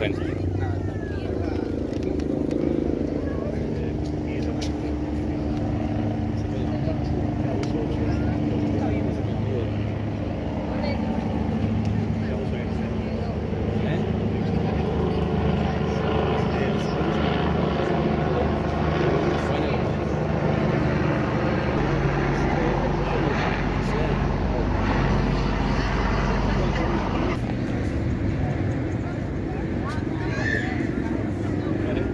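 Steady hum of motor-vehicle engines, with indistinct voices of people talking.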